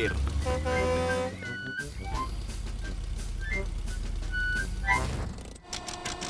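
Cartoon tow-truck engine sound effect, a low steady running hum, under light background music with scattered high notes. Both fade away about five and a half seconds in.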